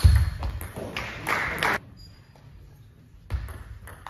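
Table tennis rally: the ball clicking off bats and table, with heavy thuds of the players' feet on the hall floor, loudest at the start and again near the end.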